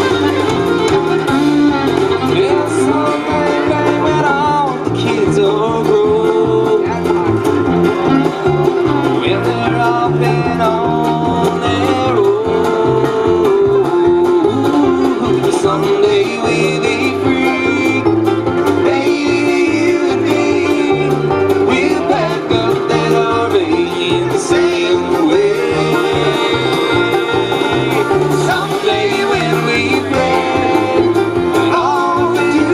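Live bluegrass band playing: banjo, fiddle, acoustic guitar and upright bass over a drum kit keeping a steady beat.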